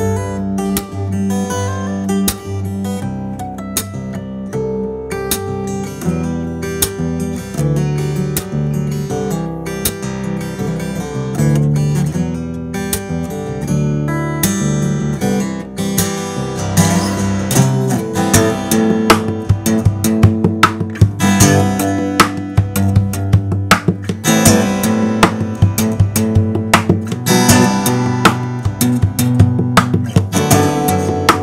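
Cort Gold-Edge LE acoustic guitar played solo fingerstyle: a picked melody over bass notes, turning busier and louder about halfway through with dense, sharp-attacked strumming.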